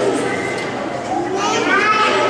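Visitors' voices chattering in a large hall, with a child's high voice calling out from about halfway through.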